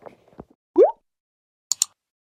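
Sound effects from an animated subscribe-button graphic. A short, loud rising pop comes about a second in, and two quick mouse-click sounds come near the end.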